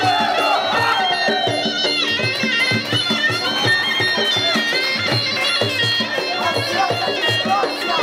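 Traditional Muay Thai sarama fight music: a reedy pi (Thai oboe) playing a continuous, wavering melody over steady hand-drum beats.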